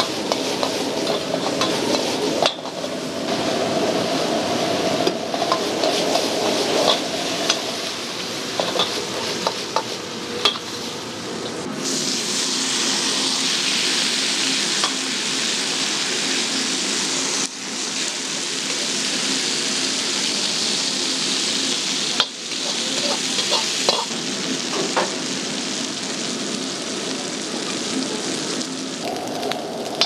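Stir-frying in an iron wok over a high-powered gas burner: food sizzling continuously while the metal ladle clinks and scrapes against the wok. In the middle the sizzle becomes a loud, even hiss for about five seconds. The sound changes abruptly several times.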